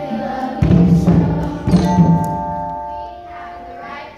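Children's choir singing held notes with hand drums and mallet percussion: two strong low drum strikes about a second apart, then the sound fades toward the end.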